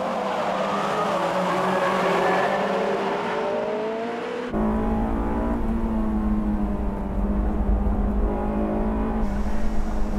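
Honda S2000 Type-S F22C inline-four engines running at high revs as the cars pass on a race circuit, the note rising slowly in pitch. About four and a half seconds in, it changes abruptly to an on-board sound: a steady high engine note under a heavy low rumble of wind and road noise from the open-top car.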